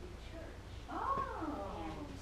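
One short animal cry, rising and then falling in pitch, about a second in, over a low steady hum.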